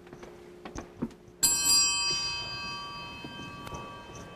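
A few light knocks, then a small bell struck once about a second and a half in, its high, ringing tones fading slowly.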